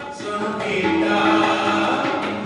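Male ragi singing Sikh shabad kirtan in classical raag style, holding a long steady note from about half a second in, over a harmonium's sustained reeds with tabla accompaniment.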